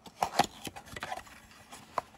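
Cardboard pipe box being handled and opened by hand: a few sharp scrapes and taps of cardboard, loudest about half a second in, then softer scattered rubbing.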